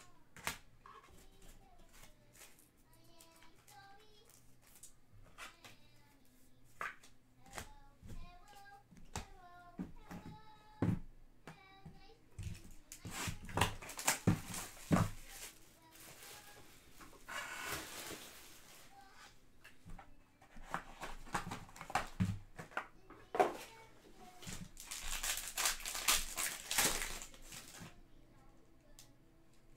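Hands handling trading-card boxes, packs and cards: a run of small clicks and taps, with several louder bursts of crinkly rustling from the packaging.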